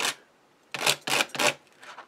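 Sandpaper rubbed over the snapped end of a thin wooden dowel to flatten it: a quick run of about five short strokes starting about a second in.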